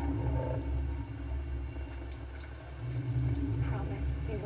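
Low rumbling growls from a gorilla over a steady deep rumble, played back from a film soundtrack. The growls are loudest near the start and again about three seconds in.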